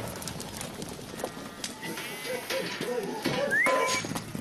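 Sheep bleating in short, scattered calls, with light knocks and a short rising whistle-like tone near the end.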